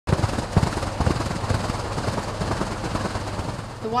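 Fountain water falling steadily in a sheet over a stone ledge into its pool, with irregular low thumps in the first second and a half.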